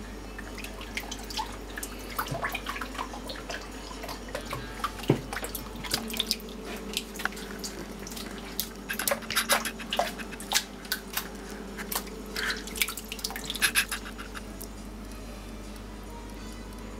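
Small irregular splashes and drips of water as wet nappy filling is stirred and handled in a glass bowl, busiest in the second half, over a steady low hum.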